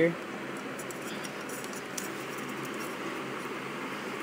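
Steady background hiss with a few faint, light clicks as a small plastic bowl is picked up and handled.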